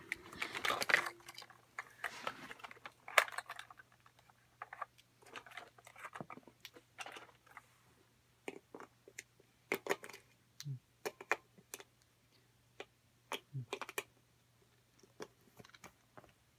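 Scattered small plastic clicks and knocks as batteries are fitted into a battery-powered toy golf club and the toy is tried. No sound comes from the toy itself: it is dead even on fresh batteries.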